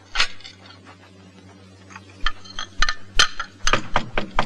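China cups and dishes clinking as they are picked up off the floor, a few sharp, irregular clinks from about two seconds in.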